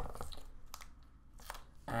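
A clear plastic phone-case retail box handled and worked open: a sharp click at the start, then a few scattered light crinkles and clicks of the plastic.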